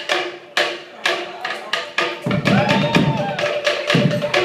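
Cook Islands drumming: wooden slit drums beat a quick, steady rhythm, and a deeper bass drum joins a little past two seconds in.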